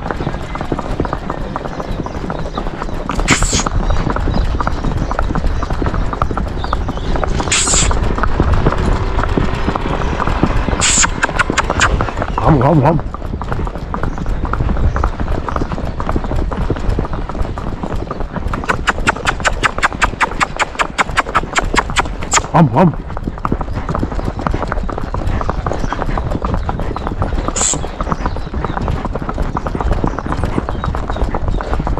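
A young horse's hooves clip-clopping on a paved road as it is ridden. Roughly two-thirds of the way through there is a stretch of quick, even hoofbeats.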